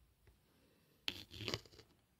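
Knitted wool mitten rustling and scraping as it is handled and its flap pulled back off the fingers, a short burst of under a second starting about a second in.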